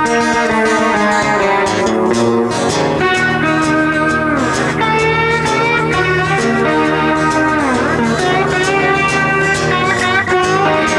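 Electric blues guitar solo on a Stratocaster-style electric guitar over a steady low backing, its lead notes gliding down in pitch a few times.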